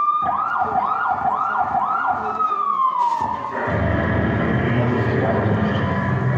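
A siren sound effect in the performance soundtrack: a police-style wail that sweeps up and down four times quickly, then slides down in one long glide a little after three seconds in. A denser mix of lower sounds follows.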